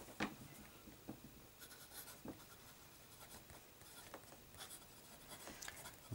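Broad 18K nib of a sterling silver Yard-O-Led Viceroy Grand fountain pen writing on smooth Clairefontaine paper: faint, soft scratching of the nib across the page in short strokes, with a few light ticks.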